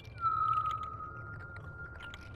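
Soundtrack tone: a single clear whistle-like tone that slides down in pitch just after the start, then holds steady for about two seconds, over a low hum and faint crackling.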